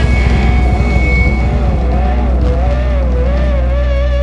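Live heavy metal band holding a song's final chord: distorted guitars and bass sustain under a lead guitar note with a wide, wavering vibrato, the drums busier early on and settling into the held chord.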